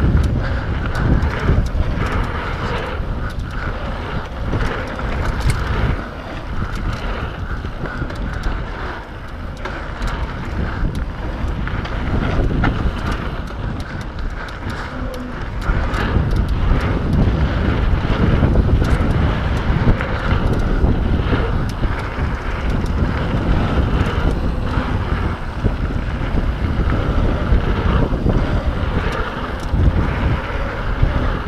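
Wind rushing over a helmet- or bike-mounted action camera's microphone on a fast mountain-bike descent, with tyre noise on the dirt trail and frequent small clicks and rattles from the bike. It gets louder about halfway through.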